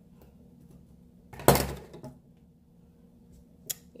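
Scissors set down on a wooden desk with one loud thump about a second and a half in, then a short click near the end.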